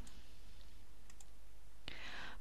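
Steady recording room tone: a low hum with faint hiss, a few faint ticks just past the middle, and a single sharp click near the end.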